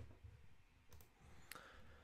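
Near silence with a few faint, short clicks, typical of a computer mouse being clicked.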